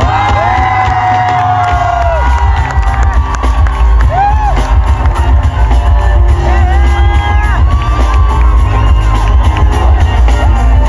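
Live Punjabi pop band playing through a loud PA, with drums, keyboards and a heavy bass line that gets stronger about two seconds in, under long, gliding melody notes. Whoops and cheers come from the crowd around the phone recording.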